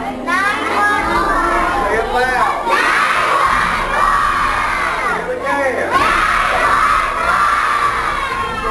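A large group of elementary-school children shouting out together, many voices overlapping. The shouting swells about three seconds in and again near the end, with a short lull between.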